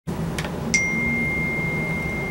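A click, then a second click under a second in that starts a steady, high-pitched electronic beep tone held without fading, over a low hum.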